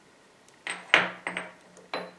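Small steel parts clinking and knocking on a cast-iron machine table as a threaded boring-head shank is handled and set down: about four light metallic knocks with a brief high ring, the loudest about a second in.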